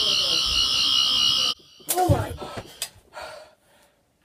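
Toy sonic screwdriver's high electronic buzz, held for about two seconds and cutting off suddenly, followed by a laugh.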